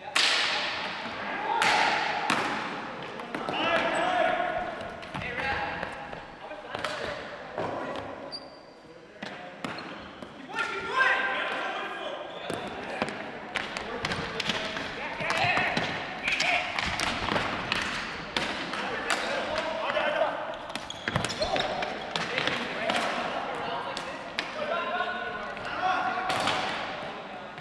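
Ball hockey play on a hardwood gym floor: plastic sticks clacking and the ball knocking against the floor and sticks, many sharp knocks throughout, echoing in the hall, with players' voices calling out between them.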